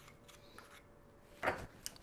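Quiet kitchen room tone, broken about one and a half seconds in by a short, soft handling rustle, with a small sharp click just after.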